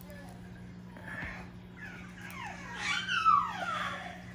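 French bulldog puppy whining: a few short falling whines in the second half, the loudest a little past three seconds in, over a steady low hum.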